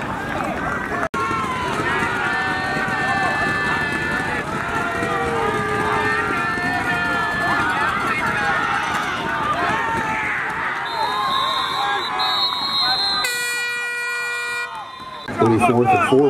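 Stadium crowd noise, many voices talking and shouting at once at a football game. Near the end a single steady air horn blast sounds for about a second and a half.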